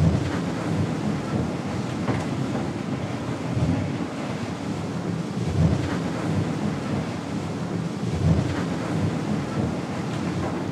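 Onboard noise of an ocean-racing yacht under way: a steady low rumble and rush of water and wind on the hull. Heavier surges come near the start, about five and a half seconds in, and about eight seconds in.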